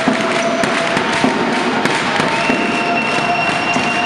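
Basketball crowd noise in a sports hall: a dense clatter of clapping and banging with voices under it, and a long high-pitched tone held from about halfway through.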